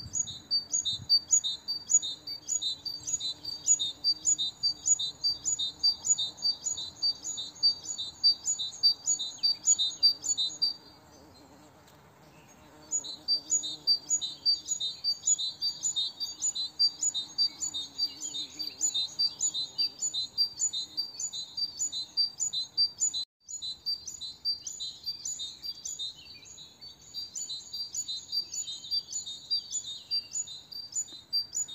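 A songbird singing a fast, evenly repeated high chirp, about three notes a second. It breaks off about a third of the way in and starts again some two seconds later.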